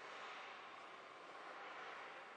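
Faint steady hiss of room tone, with no distinct handling sounds from the tape being laid.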